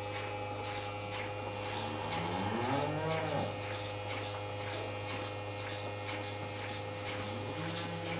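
A cow mooing once, a rising-then-falling call about two seconds in, with another starting faintly near the end, over the steady hum of a bucket milking machine.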